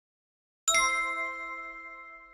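Notification-bell sound effect: a single struck bell ding about two-thirds of a second in, ringing on and fading slowly.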